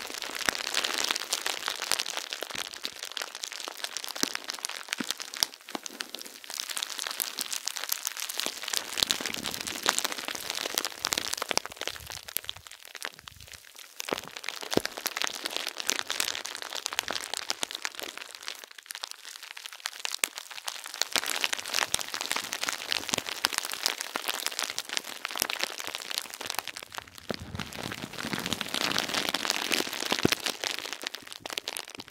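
Hard plastic bubble wrap squeezed and rubbed by hand, giving a dense, continuous crinkling and crackling. It swells and eases in slow waves, going softer twice, about a third and about two-thirds of the way through.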